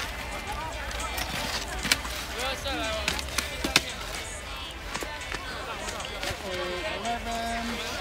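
Busy ski-area ambience: a crowd of voices calling in the distance, with scattered sharp clicks and knocks of skis and poles on snow.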